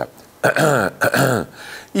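A man's voiced throat clearing, given as a demonstration of the constant throat clearing (pigarro) typical of laryngopharyngeal reflux. It comes as two short pushes, each falling in pitch.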